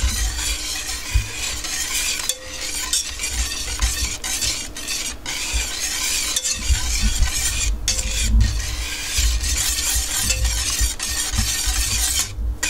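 Wire whisk stirring melting butter, milk and sugar in a stainless steel pot, the wires scraping and tapping unevenly against the metal over a steady hiss.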